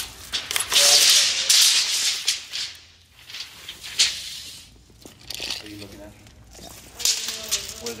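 Tape measure blade rattling and scraping as it is pulled and handled along the floor, loudest for a couple of seconds near the start, with a sharp click about four seconds in.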